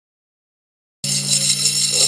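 A continuous metallic jingling rattle cuts in abruptly about a second in, with a steady low hum beneath it.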